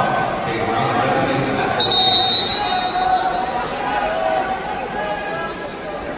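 Voices and chatter echoing in a large gymnasium. About two seconds in, a short high-pitched signal sounds for about half a second as the wrestling bout is stopped.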